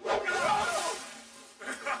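A cartoon soundtrack cry: a sudden loud noisy burst with a wavering, pitched voice-like cry over it, fading away over about a second and a half. A short laugh starts near the end.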